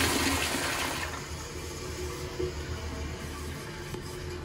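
Toilet flushing: the loud rush of water tails off over the first second into a quieter, steady running of water.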